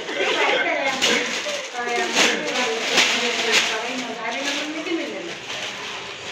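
Several people talking over one another, the words unclear, with a few brief rustles.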